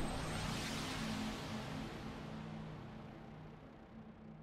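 Intro music dying away: a held low chord over a faint hiss, fading steadily toward silence.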